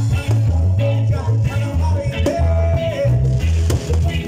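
Live band playing an upbeat song through a PA: a prominent bass line, electric guitars and drums, with a singer.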